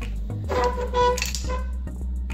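Background music: a low bass line moving in steps, with a short higher melodic phrase about halfway through.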